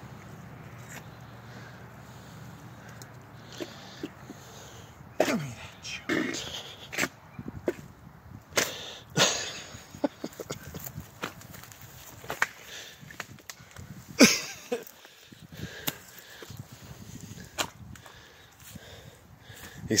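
A man straining and grunting as he pulls himself out of creek mud, with scattered scuffs, rustles and snaps of grass, roots and dirt on the bank.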